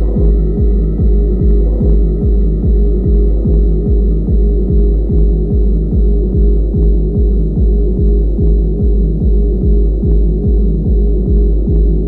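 Techno track with a steady four-on-the-floor kick drum pounding a little over two beats a second under a sustained droning tone.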